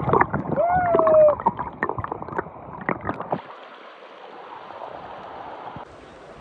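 Fast-flowing stream water heard with the microphone underwater: a muffled jumble of knocks and crackling for about three seconds, then a steady, even rush of water.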